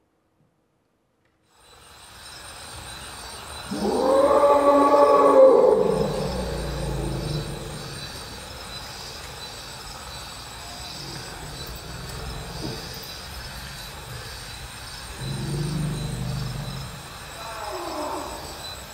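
Amplified electric komungo, its strings struck and pressed with a bamboo stick, giving a low roaring tone that swells up about four seconds in and dies away over a low rumble. A second, lower swell comes near the end, followed by a falling slide in pitch.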